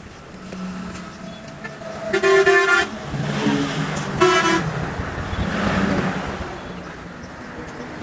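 A vehicle horn sounds twice, the first blast under a second long and the second shorter, over the noise of road traffic.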